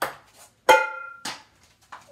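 Ping-pong ball bouncing: four sharp hits about 0.6 s apart. The loudest, about 0.7 s in, rings briefly as the ball strikes a hard hollow object.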